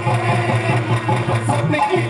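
Live folk band playing instrumental music through a stage PA: a fast, even drum beat under a sustained melody.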